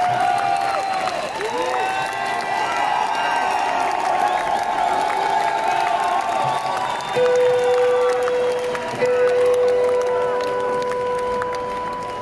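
Concert crowd applauding and cheering, with whoops and whistles rising and falling. About seven seconds in, a steady held tone comes in, and a second, higher tone joins it about two seconds later.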